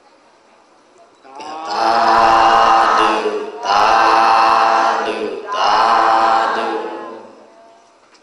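A congregation chanting "sadhu" in unison three times, each call long and drawn out, starting about a second and a half in. It is the customary Buddhist cry of approval and rejoicing at an offering.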